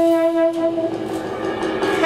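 Tenor saxophone holding one long, steady note that fades about a second in, with drums and cymbals played lightly underneath.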